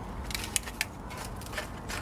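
A few light clicks and crackles from handling a small plastic plant pot and a cactus root ball with loose potting soil.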